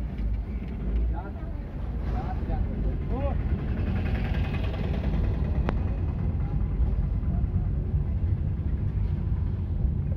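Steady low rumble of a moving vehicle's engine and road noise. Brief voices of people come through a couple of seconds in, and there is one sharp click near the middle.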